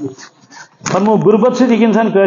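A man's voice over a microphone: a short pause, then from about a second in a long, drawn-out phrase with a wavering, held pitch, chanted like devotional verse rather than spoken.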